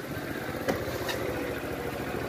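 Small motorcycle engine idling steadily, with a couple of light clicks in the middle.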